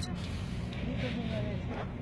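Faint, indistinct voices over a steady low rumble, like a running engine.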